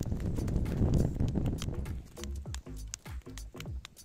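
Background music with a light clip-clop beat and falling pitched notes. During the first two seconds a louder rustling noise, garlic stalks being handled and pulled, sits over the music.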